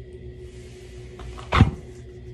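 One short, sharp sound about one and a half seconds in, the loudest thing here, over a low steady hum.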